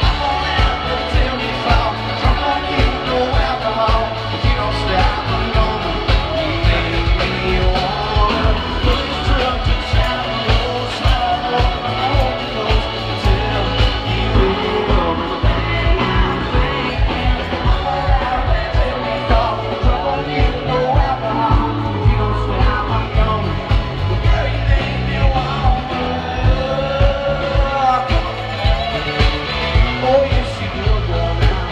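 Live country band playing on an outdoor stage with a steady drum beat and singing, heard from the crowd through a phone microphone.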